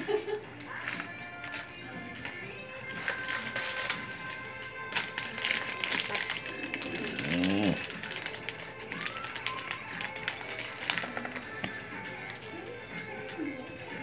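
Steel dental instruments, an elevator and forceps, clicking and scraping against a tooth as it is worked loose for extraction, a run of sharp taps over about ten seconds. Background music plays throughout, and there is one brief vocal sound about seven and a half seconds in.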